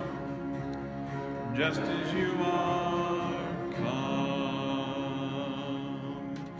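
Contemporary worship song with singing in long held notes over instrumental backing. New held phrases begin about a second and a half in and again near four seconds.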